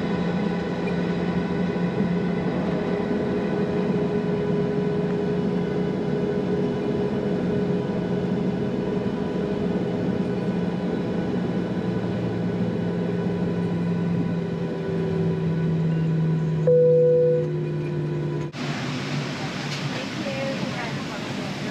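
Cabin noise of a Boeing 737-800 taxiing: the steady hum of its CFM56 engines at idle, with several held tones that sag slightly lower toward the end. Near the end a short single tone sounds, then the sound changes abruptly to a brighter cabin ambience.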